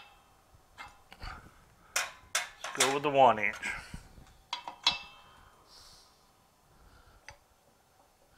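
Steel drift and mandrel parts clinking and knocking against each other and the press plates as they are set up in a shop press: a series of separate metallic clanks, the sharpest around two to three seconds in and again near five seconds.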